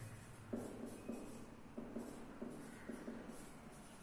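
Dry-erase marker writing on a whiteboard: a run of short, faint strokes as a word is written out.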